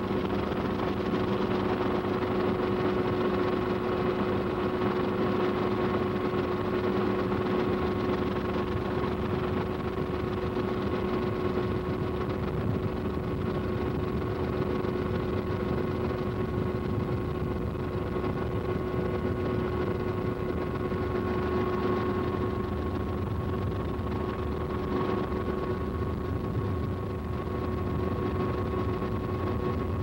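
Steady helicopter engine drone heard from inside the cabin, with a constant whine over it.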